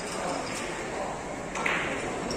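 Carom billiard balls clicking against each other during a shot, with the loudest sharp click about one and a half seconds in, over a murmur of voices in the hall.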